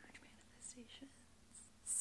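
A quiet pause in a woman's talk: faint soft mouth sounds, then a breath in near the end just before she speaks again.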